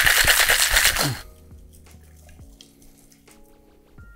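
Ice rattling in two metal cocktail shaker tins shaken hard at once, a fast, even clatter that stops about a second in. Faint background music follows.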